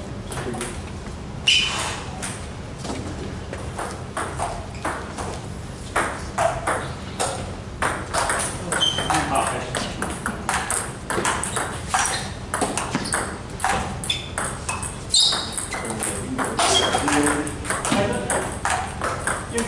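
Table tennis balls clicking against paddles and bouncing on tables, many short sharp ticks at irregular intervals from several tables at once, with people talking in the background.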